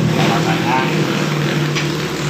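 A man's voice in the first second, over a steady low droning hum that runs throughout.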